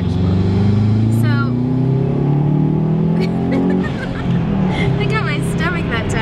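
Car engine heard from inside the cabin while driving, its pitch rising steadily as the car accelerates for about four seconds, then dropping lower and holding steady.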